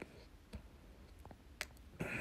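Four faint, short clicks spread over two seconds against a quiet room background.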